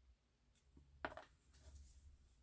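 Near silence with faint handling sounds of a small RC shock absorber being tightened by hand: one light click about a second in, then soft rubbing near the end.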